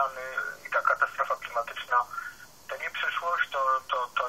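A person talking in short phrases, heard thin and narrow like speech over a telephone line, with no bass and no treble.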